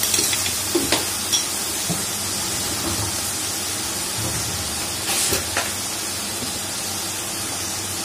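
Mustard-paste masala frying in hot oil in a metal kadhai: a steady sizzle. A few light clicks come about a second in and again around five seconds.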